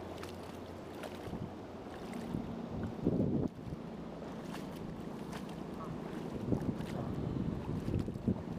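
Wind rushing over the microphone, with water sloshing and light splashes from wading through shallow, weedy river water with a hooked smallmouth bass on the line. A brief louder burst comes about three seconds in.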